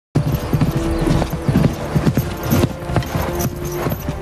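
Hoofbeats of several ridden horses: a quick, irregular clip-clop throughout.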